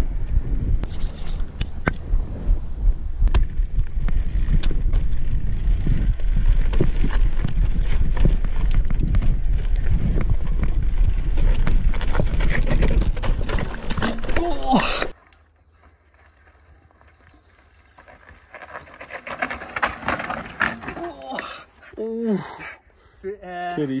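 Cross-country mountain bike rolling down a rocky trail: wind rushing on the on-bike camera's microphone with a steady rumble and many sharp rattles and knocks as the tyres and fork go over rock. After about fifteen seconds it cuts off suddenly to a much quieter scene with a few short voices.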